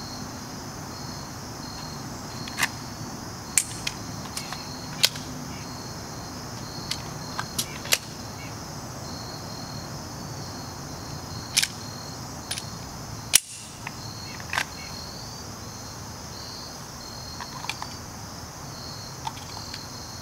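Sharp clicks and clacks of a pistol being drawn and reloaded: holster, magazine and slide handling, about a dozen separate clicks with the loudest about two-thirds of the way through. Crickets chirp steadily behind.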